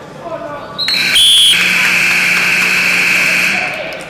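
Gym scoreboard buzzer sounding for about two and a half seconds, starting with a brief higher tone and then held steady before fading, marking the end of a wrestling period.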